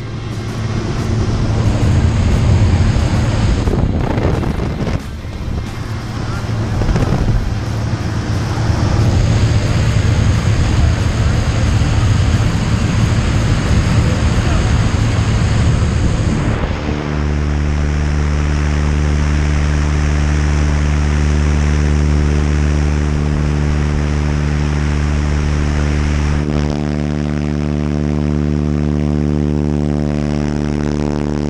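Engine and wind noise of a small single-engine propeller plane, heard from inside the cabin with the door open: a loud, steady rush over a low drone. About halfway through it cuts off suddenly to background music of held notes.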